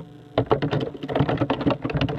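Rapid, irregular clicking and tapping, starting after a brief lull.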